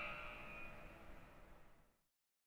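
Near silence: a faint sound dies away over the first second or so, then silence.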